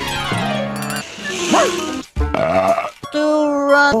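Cartoon soundtrack excerpts cut together about once a second: background music and character voices, each snippet breaking off abruptly into the next, with a quick gliding sound effect near the middle.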